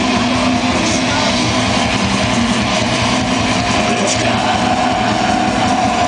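Extreme metal band playing live at high volume: heavily distorted electric guitars and drums merging into a dense, unbroken wall of sound.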